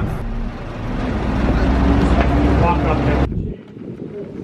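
Coach bus engine and road rumble heard from inside the cabin: a deep, steady drone that grows louder and a little higher in pitch, then cuts off abruptly a little over three seconds in.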